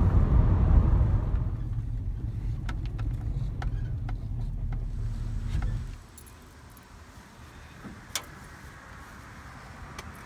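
A van driving on a road: a steady low rumble of engine and tyre noise, strongest in the first second or so, with a few light clicks. About six seconds in it cuts off suddenly to a much quieter outdoor background, with one sharp click near the end.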